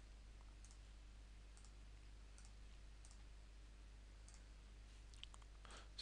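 Near silence: a steady low hum with about seven faint, short clicks of a computer mouse spread through it.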